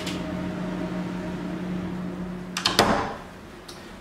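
Steady low electrical hum from equipment in a utility cupboard. It cuts off about three seconds in with a few clicks and a knock, as the cupboard door is shut.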